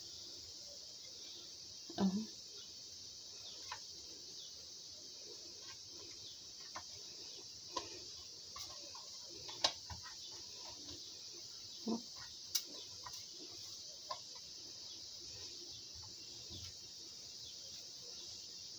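Hands pulling apart shredded kunafa dough and pressing it into the cups of a metal cupcake tin: soft handling noise with about half a dozen short, light taps and clicks scattered through, over a steady high hiss.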